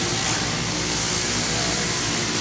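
Handheld electric buffer running steadily, its buffing bonnet working polishing compound over the bearing edge of an acrylic drum shell, with an even motor hum and hiss.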